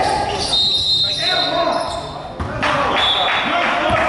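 Basketball bouncing on a hardwood gym floor, with voices chattering and echoing in a large gymnasium.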